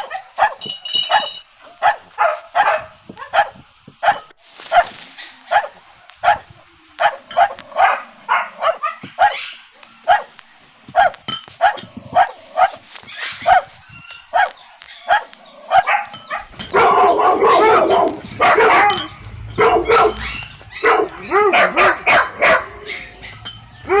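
Siberian husky puppies yipping in many short, quick calls as they eat from their bowls. From about two-thirds of the way through, the calls become longer, louder and wavering.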